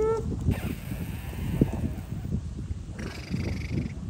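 Five-week-old schnoodle puppies grunting and growling softly as they wrestle in play, over a low rumble. A short rising whine comes right at the start.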